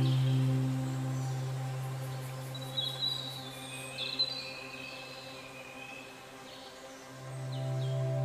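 Soft ambient background music. A held chord fades away, a few short high bird-like chirps sound around three to four seconds in, and the chord swells back in near the end.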